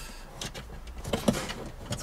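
Plastic handling noise: light clicks and rubbing as a USB-C charging cable is pulled from the dashboard air vent and fiddled into a car phone holder.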